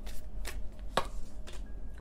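Tarot cards being shuffled by hand, with a few sharp card snaps about one every half second.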